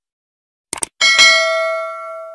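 A quick double mouse-click sound effect, then a notification bell chime about a second in that rings out and fades slowly.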